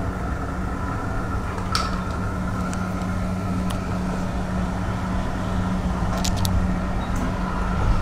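A steady low machine hum, with a few light clicks and knocks as a plastic detergent jerrycan and measuring cup are handled.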